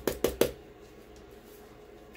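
Four or five quick, light taps and clicks in the first half second, the last one loudest: a small plastic glitter cup and a glitter-coated mug being handled and set against the table.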